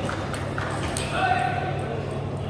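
A few sharp clicks of celluloid table tennis balls striking bat or table in a large, echoing hall, over a steady murmur of voices. A short pitched call, the loudest sound, comes a little past the middle.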